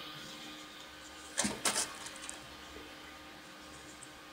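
Cotton crochet twine and a crochet hook being worked through a stitch: a short cluster of quiet scratchy rustles about a second and a half in, with a few fainter ticks just after.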